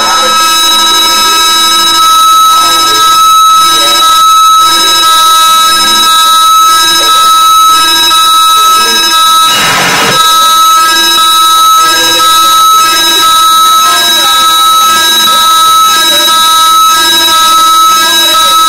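Live harsh noise electronics: a loud, unbroken wall of electronic noise with several steady high whining tones and wavering lower tones. A brief wider rush of noise comes about ten seconds in.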